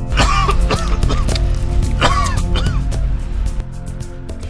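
Background music with a steady bass line. Over it, a person gives two throat-clearing coughs, one at the start and one about two seconds in.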